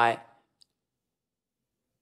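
A man's voice saying one short word, then near silence broken by a single faint click a little over half a second in.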